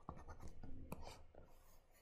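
Faint taps and scratches of a stylus drawing on a tablet screen, with a sharper tap about a second in.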